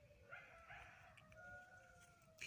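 A rooster crowing far off, one faint drawn-out call held for about a second and a half.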